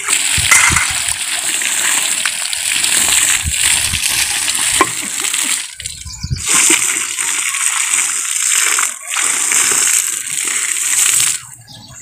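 Water poured from a pot splashing onto a compost heap of dung and crop waste, in pours broken by short pauses about six and nine seconds in.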